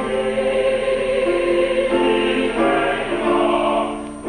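University choir singing sustained chords in several parts, the held notes shifting to new pitches every second or so.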